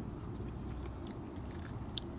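A person chewing a small, dry mulberry with little juice in it, a few soft mouth clicks over a steady low background rumble.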